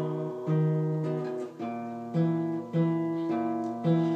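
Solo acoustic guitar playing chords between sung lines. A fresh chord or note is struck about every half second to a second, each left to ring.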